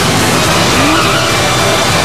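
Film sound effects of a car's engine revving and its tyres skidding, at a loud level, with a short rising pitch about three-quarters of a second in.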